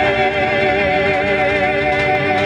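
Live marinera music: one long held note with a wavering vibrato, over guitar accompaniment.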